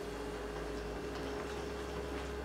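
Hands rubbing and mixing flour with water in a glass bowl: faint, soft, scattered crumbling sounds over a steady low electrical hum.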